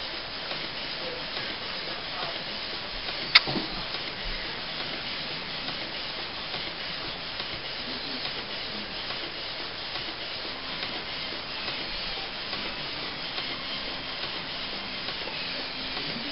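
Canon iP4500 inkjet printer printing a page: the print-head carriage shuttling back and forth as the paper feeds through, a steady mechanical noise with one sharp click a few seconds in.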